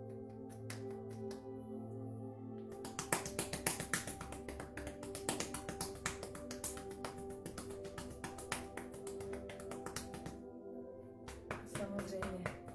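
Quick, light patting of open palms on the head, around the ears and over the hair, as part of a self-tapping exercise: a few scattered taps, then from about three seconds in a dense run of several taps a second that thins out near the end. Soft, steady background music plays underneath.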